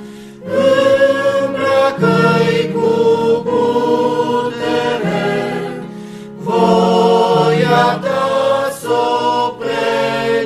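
A choir singing a Romanian hymn, the words of its last stanza, in sung phrases with a short breath pause just after the start and another about six seconds in.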